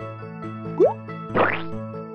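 Children's cartoon background music with a repeating keyboard melody, over which a quick upward-sliding plop effect sounds a little under a second in, the loudest moment, followed by a rising whoosh about half a second later.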